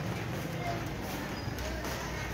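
Steady rain falling on a wet, puddled rooftop.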